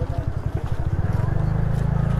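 TVS Ntorq 125 Race XP scooter's single-cylinder engine running at low road speed, heard from the rider's seat: a low, pulsing engine note that settles into a steadier drone after about a second.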